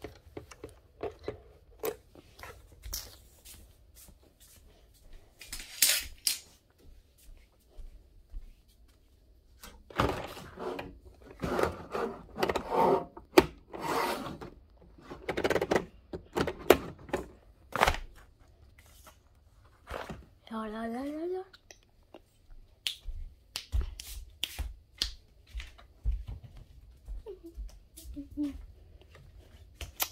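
Irregular rustling, clicks and knocks of things being handled close to the microphone, denser in the middle, with one short rising pitched sound about twenty seconds in.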